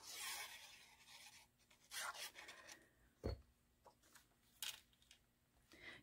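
Faint rubbing and scraping of cardstock and paper being handled and glued on a tabletop, with a fine-tip glue bottle drawn across the card. A single sharp tap comes about halfway through.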